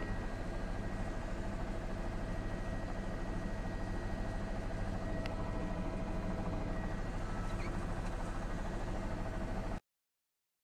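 News helicopter's engine and rotor drone picked up by the reporter's open microphone in the cabin: a steady drone with a rapid, even pulsing. It cuts off abruptly just before the end.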